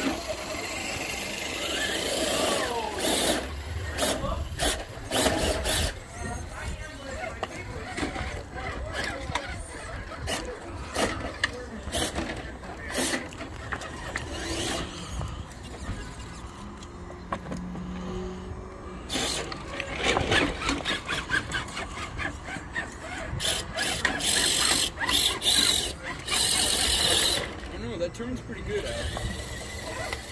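A 1/10-scale RC rock crawler on a Vanquish SCX10 II chassis crawling slowly over rocks: its electric drive whines, with many scattered clicks and knocks of tyres and chassis against stone.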